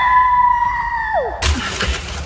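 A woman's long, high-pitched held yell that rises, holds steady and drops away after about a second. Then, about a second and a half in, a sudden change to rustling and scuffing with a couple of low bumps as she crawls through a plastic tunnel tube.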